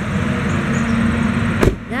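Garbage truck's engine running, with a single sharp bang about one and a half seconds in.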